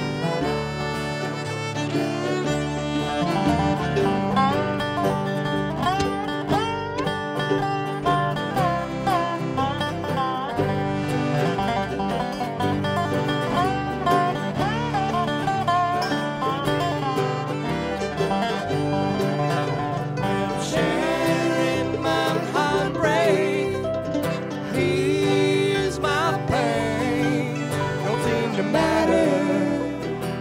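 Live bluegrass string band playing an instrumental break: a fiddle leads at the start, and later a dobro played with a steel slide bar takes the lead. Upright bass and acoustic guitar back both solos.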